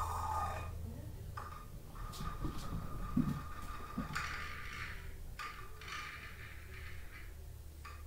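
Quiet room tone with a steady low hum, over which a person breathes in long, soft breaths while holding a seated yoga twist; a few faint soft knocks come about two to four seconds in.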